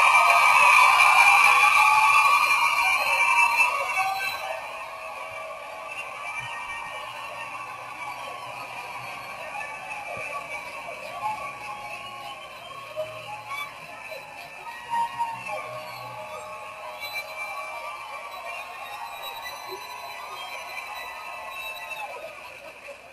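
Soundtrack of an old black-and-white comedy film clip playing back, with no clear words. It is loudest for the first four seconds or so, then quieter and steady for the rest.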